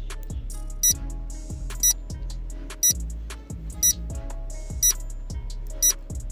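Countdown timer sound effect beeping once a second, six short high-pitched beeps, over background music.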